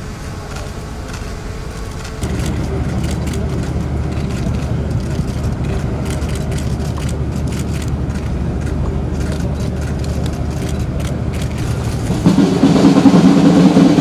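A steady engine hum sets in about two seconds in and carries on. Near the end a brass band starts playing loudly over it.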